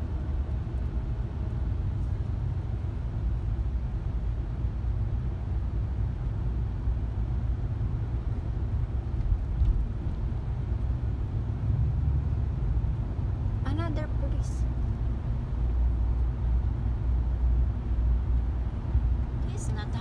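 Road and engine noise heard inside a moving car's cabin in freeway traffic: a steady low rumble.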